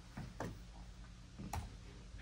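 A few faint clicks of a laptop key or trackpad being pressed to advance a presentation slide, the sharpest about a second and a half in, over low room hum.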